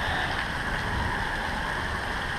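Heavy rain falling steadily, with a low rumble underneath.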